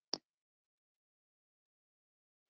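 A single short, sharp click just after the start; the rest is near silence.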